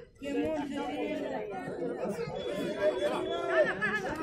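Nearby spectators chattering, several voices talking over one another.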